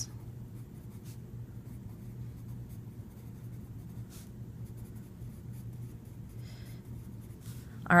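Pencil writing on lined notebook paper: a faint scratching of short strokes as words are written out by hand.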